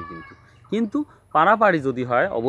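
A man speaking in short, emphatic phrases, with a brief pause about half a second in.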